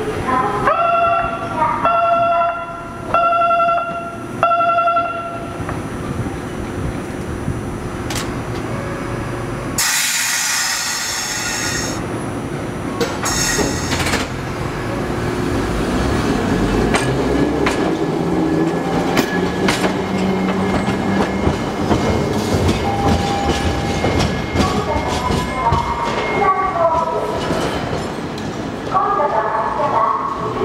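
A tram coming through rail switches: four repeated horn-like tones in the first few seconds, a loud hiss about ten seconds in and a shorter one soon after, then motor hum rising in pitch and wheels clicking over the pointwork as it draws near.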